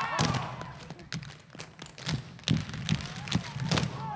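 Dancers' shoes striking the stage floor in a string of sharp clicks and low thuds at an uneven pace, a footwork break with little else under it.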